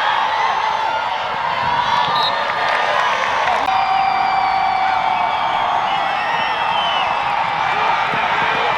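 Crowd in the stands cheering and shouting, a dense steady mix of many voices, with a held note sounding for a couple of seconds in the middle.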